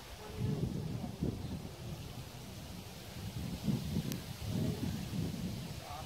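Wind buffeting the camera microphone: an irregular, gusting low rumble.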